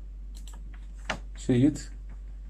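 A few clicks of computer keys, then a short vocal sound near the end.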